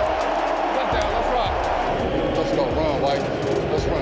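Stadium crowd cheering and yelling after a touchdown: a dense, steady wash of many voices with no single voice standing out.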